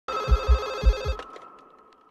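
Corded landline telephone's electronic ringer trilling, with four deep thumps beneath it. The ring cuts off about a second in, leaving one thin tone that fades away.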